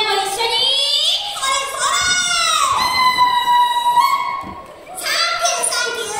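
A high-pitched, childlike character voice speaking over the stage show's loudspeakers, drawing out one syllable for about a second near the middle.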